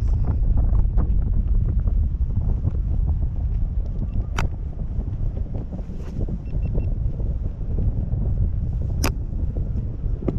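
Wind buffeting the microphone of a camera mounted on a parasail tow bar high in the air, a steady low rumble. Two sharp clicks stand out, one a little before the middle and one near the end.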